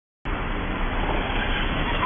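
Steady street traffic noise, an even, muffled hiss with no distinct events, starting a moment in.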